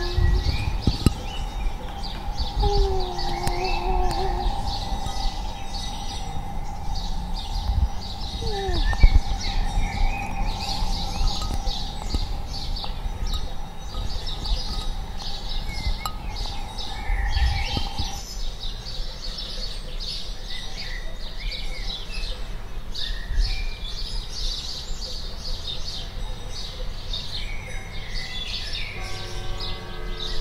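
Many small birds chirping and twittering in quick short calls, over a steady held tone that stops about eighteen seconds in.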